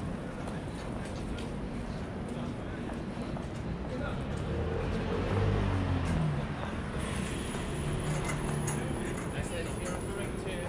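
Busy city street ambience on a pavement: passers-by talking, footsteps and traffic running steadily. The voices are loudest around the middle.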